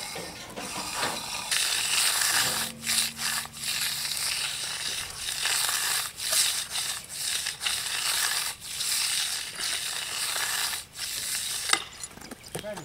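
Hand float and edging trowel scraping over wet concrete in a fresh sidewalk slab: repeated rasping strokes, each a second or two long with brief gaps between, as the surface and edge are floated smooth.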